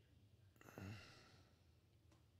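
A man's brief sigh, falling in pitch, about half a second in, against near silence.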